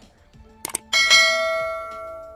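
Subscribe-button animation sound effect: two quick mouse clicks, then a bell ding that rings on and slowly fades.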